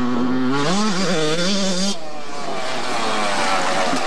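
Dirt bike engine running under throttle, its pitch wavering up and down as the throttle is worked. It gets louder and brighter for about a second, then the sound changes abruptly and the engine note falls steadily.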